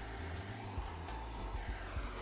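Hand brazing torch hissing steadily as its flame heats an aluminum box seam for brazing.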